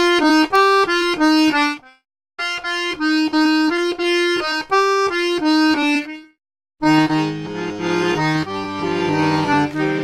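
Accordion playing short looped melodic phrases of separate notes, each loop ending with a brief silence. The third loop starts about seven seconds in and adds lower bass and chord notes under the melody.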